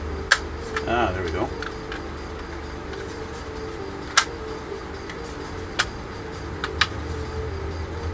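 Plastic fuselage halves of a 1/48 F-4 Phantom model kit clicking and tapping as they are pressed and worked onto the wing in a tight compression fit: a few sharp clicks, the loudest about four seconds in, over a steady low hum.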